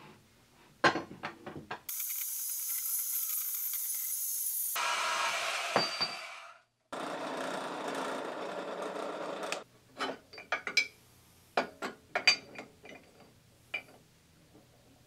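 Benchtop drill press drilling into a small steel part for about three seconds, with sharp metal clicks and knocks before and after as the part and its vise are handled. Early on comes about five seconds of steady hissing machine noise that ends in an abrupt cut.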